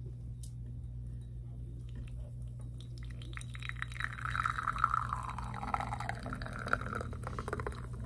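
Espresso from a Flair 58 manual lever espresso maker streaming out of a bottomless portafilter into a glass. It starts about three seconds in and grows louder a second later. It is a fast-running shot, taken by the brewer as a sign that the grind must be much finer.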